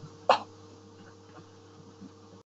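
A single short throat sound from a man, a quick cough-like catch about a third of a second in, over a faint steady electrical hum and hiss.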